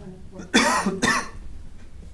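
A person coughing twice, loudly and close to a microphone, about half a second and one second in.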